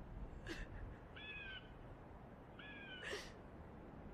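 A young woman crying quietly: a breathy gasping sob about half a second in and another at three seconds. Between them come two short, animal-like cries.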